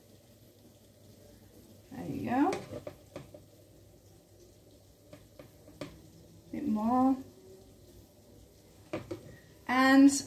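A few light clicks and taps of a serving spatula against a ceramic plate and the rice colander as rice is served, over a faint steady low hum. Twice, about two seconds in and again near seven seconds, there is a short vocal sound from the cook.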